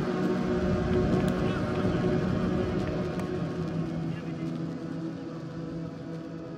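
Indistinct voices of people on an outdoor football pitch over a steady low hum. The sound fades down over the last couple of seconds.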